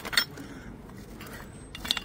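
Old metal engine starting handles clinking against each other in a plastic crate as they are handled: a few sharp clinks at the start and a couple more near the end.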